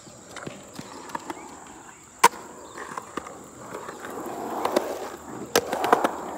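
Skateboard wheels rolling on a concrete skatepark surface, the rumble building and getting louder in the second half as the board comes closer. Two sharp clacks stand out over it, one about two seconds in and one near the end.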